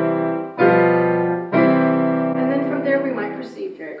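Digital piano playing a cadence in block chords: new chords are struck about half a second and a second and a half in, and the last chord is held and fades away.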